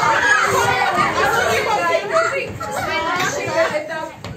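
Many children's voices chattering and calling out over one another during a game, with no single speaker standing out.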